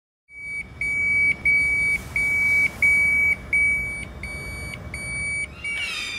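Hospital electronic alarm beeping: a high tone of about half a second, repeated roughly one and a half times a second over a low rumble. It starts a third of a second in and grows a little fainter toward the end.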